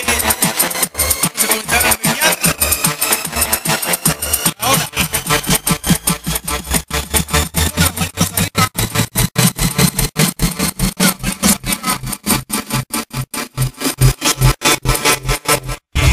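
Vixa electronic dance music in a build-up: a pulsing beat that comes faster and faster toward the end, with a rising sweep over it. It cuts to a brief silence just before the drop.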